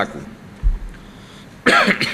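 A man gives a short, loud cough close to a microphone near the end, clearing his throat. A low thud about half a second in.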